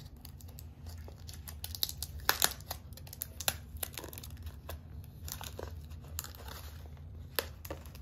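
Fingers picking at and peeling tape off the rim of a clear plastic deli-cup lid: irregular crinkles and crackles with sharp plastic clicks, loudest a little after two seconds in.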